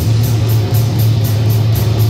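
Live rock band playing a heavy instrumental passage: electric guitars and bass holding a steady low note over drums, loud and without vocals.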